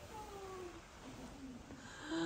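Faint animal calls, three or four short ones, each sliding down in pitch.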